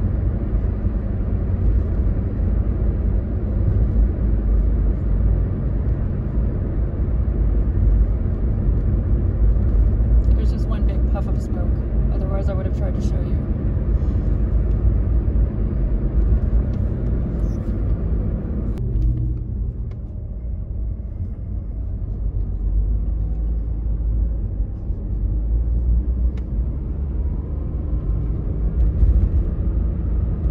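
Car engine and road noise heard from inside the cabin while driving, a steady low rumble. About nineteen seconds in it turns duller and a little quieter, and a faint rising whine comes in near the end.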